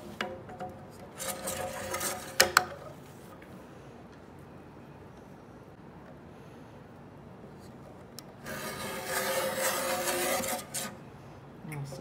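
Menno RPM-420 rotary paper trimmer: the blade carriage slides along its rail with two sharp clicks about two seconds in. Near the end comes a longer slide of about two seconds as the rotary blade cuts through a sheet of 230 g photo paper.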